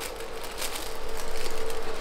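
Paper and plastic rustling and crinkling as items are pushed into place in a gift basket, with a faint steady hum underneath.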